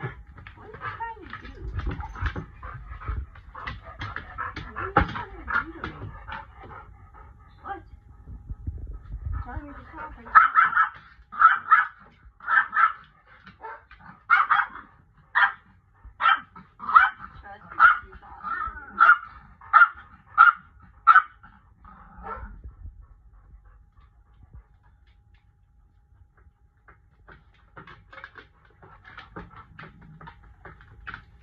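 A dog barking in a steady string of over a dozen short, sharp barks, a little more than one a second, starting about ten seconds in and stopping a little past twenty seconds. Before the barking there are quieter scattered dog and movement sounds.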